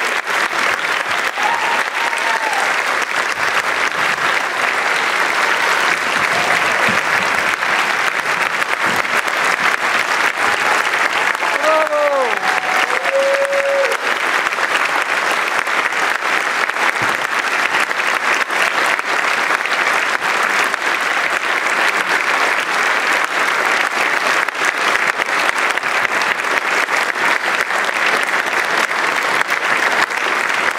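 Concert audience applauding steadily and continuously, with a few short calls from voices in the crowd near the start and about twelve seconds in.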